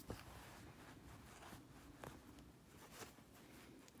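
Near silence, with a few faint soft ticks and rustles from hands handling an embroidery needle, thread and fabric held in a wooden hoop.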